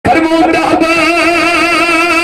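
A man's voice chanting one long held note with a wavering vibrato, in the sung style of an Islamic sermon (bayaan).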